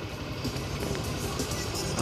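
Motorcycle engine running steadily at low town speed, a low pulsing hum heard from the rider's position.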